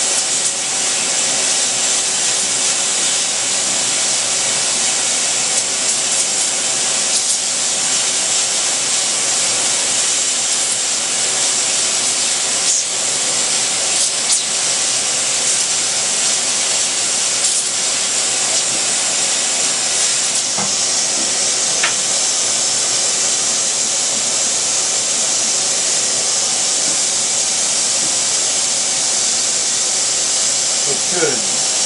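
Vacuum cleaner running steadily, its hose nozzle held to a circuit board and drawing air through the board's holes: a steady hiss. It is sucking excess conductive ink out of the through-holes so that they are clear before copper plating.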